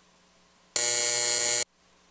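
A chamber's electric buzzer sounds once, a loud, harsh steady buzz lasting just under a second that starts and cuts off abruptly, marking the end of the minute of silence.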